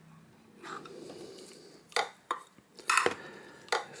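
Handling noise of glass and plastic: a small glass enclosure and a thin wooden stick moved about inside a plastic tub. There are a few short, sharp clicks and taps in the second half.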